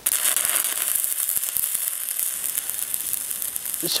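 Stick-welding arc of a 6010 electrode on DC from an Everlast Cyclone 312 inverter welder, a steady, dense crackling sizzle that starts abruptly and holds throughout, as a weld is run on a quarter-inch steel T-joint.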